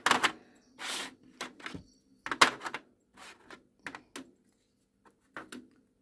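Small plastic diamond-painting drill containers and bags being handled and set into a plastic storage tray: a string of irregular light clicks and knocks with a short rustle, the sharpest click about halfway through.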